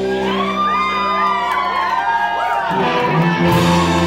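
Live garage-rock band playing: a held guitar and bass chord with wavering, gliding high notes over it, moving to a new chord about three seconds in.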